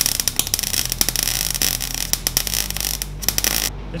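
Arc welding on a beer can: a continuous crackle from the welding arc that cuts off abruptly near the end, over a low steady hum.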